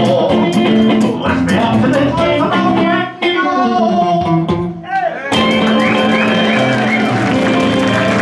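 Acoustic guitar picked along with a man's singing, ending on a long held note that slides down with vibrato. About five seconds in the guitar stops and audience applause breaks out.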